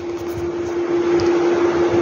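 Steady room noise: an even hiss with a constant hum running through it, growing slightly louder toward the end.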